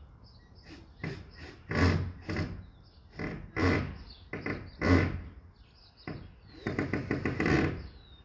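Knocks from work on the wooden wall of a shed: a handful of separate blows, then a quick run of about eight near the end.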